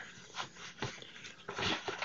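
Suede leather shop apron rustling and scuffing as arms are pushed through its sides: a couple of short scuffs, then a longer rustle near the end.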